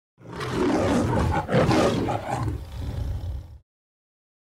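Lion roar with a deep rumble underneath, swelling in, surging again about a third of the way through, and cutting off suddenly before the end.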